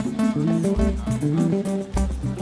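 A band playing an instrumental passage: bass guitar and guitar notes over a steady drum beat.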